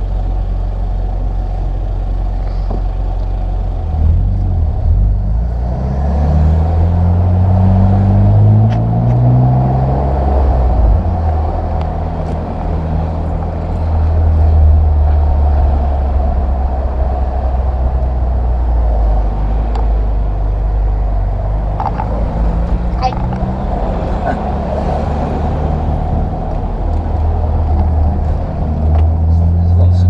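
BMW M Roadster's straight-six engine pulling away, its note climbing through the revs between about four and ten seconds in, then running at a steady pitch while cruising, and climbing again near the end. It is heard from inside the open-top car.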